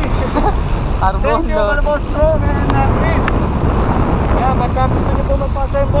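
Loud wind buffeting on the microphone of a camera moving along with a bicycle at riding speed, with voices calling out over it, about a second in and again near the end.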